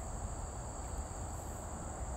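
Steady, high-pitched chorus of insects trilling continuously, with a low rumble underneath.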